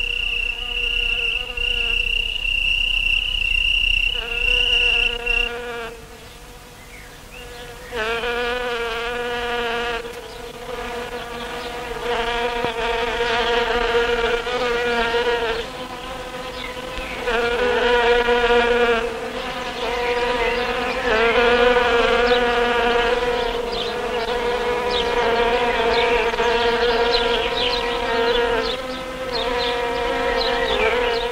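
A buzzing, insect-like drone. A single high whine holds for the first five seconds, then dips, then wavering buzzes swell and fade in repeated pulses a couple of seconds long.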